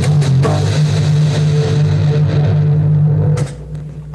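Amplified violin playing sustained bowed notes over a steady low drone, the music stopping about three and a half seconds in.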